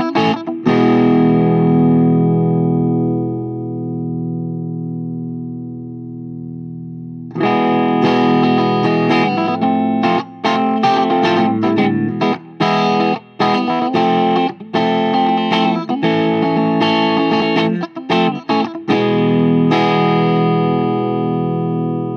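Overdriven electric guitar played through the Garland FX HTX Active Combo Drive pedal into a Marshall 4x10 cabinet. A distorted chord rings out and slowly fades for several seconds, then a choppy riff with short stops follows, and it ends on another chord left to ring.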